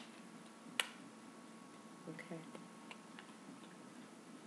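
Tarot cards handled and shuffled in the hands: one sharp card snap about a second in, then a few faint clicks of the cards.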